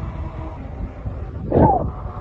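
Wind buffeting the microphone and road rumble from a moving e-bike, with one short voiced sound from the rider, falling in pitch, about one and a half seconds in.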